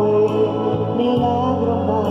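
Electronic keyboard playing a slow instrumental passage: held chords in the bass with a gentle melody line above, the chord changing about a second in.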